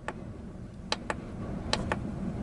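Sharp plastic clicks of the MODE push button on a Polaris Ranger XP 1000's dash instrument cluster, pressed and released in quick pairs to page through the display readouts, over a faint low background rumble.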